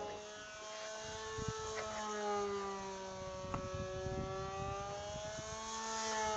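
Electric radio-controlled model warplane's motor and propeller whining in flight, one steady pitched tone that sinks slowly in pitch and then rises a little again as the plane passes.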